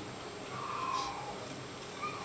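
Faint baby crying from a film's production sound track, played back over studio monitor speakers.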